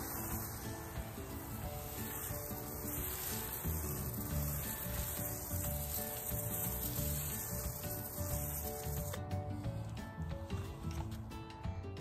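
Hand-pump foam sprayer hissing steadily as it sprays foam, over soft background music; the hiss stops about nine seconds in.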